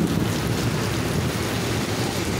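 Heavy rain falling on a flooded street, a steady, even hiss.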